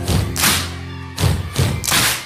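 Balls bounced on a wooden stage floor: about five heavy thuds at irregular spacing, over recorded music.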